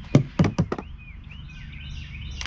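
Three quick knocks about a quarter second apart, followed by faint short chirps.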